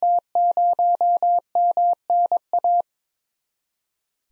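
Computer-generated Morse code: a steady tone near 700 Hz keyed at 22 words per minute, sending the callsign W0MNA (dot-dash-dash, five dashes, dash-dash, dash-dot, dot-dash). It stops a little under three seconds in.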